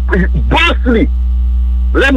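Loud, steady low electrical mains hum running under the recording, with a few words from a man's voice in the first second.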